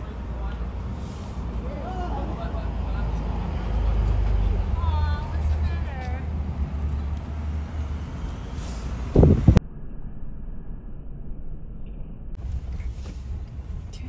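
Low, steady rumble of a vehicle's engine and road noise heard from inside the cab, with faint wavering voices in the background. A short loud burst comes about nine seconds in, and right after it the sound thins out abruptly.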